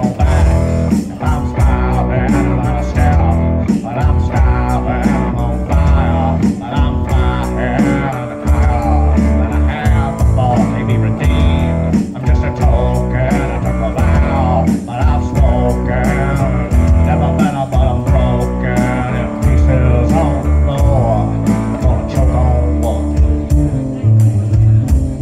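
Live band of electric guitar, upright double bass and drum kit playing a blues-rock song, the electric guitar carrying bending lead lines over a steady drum beat and bass line.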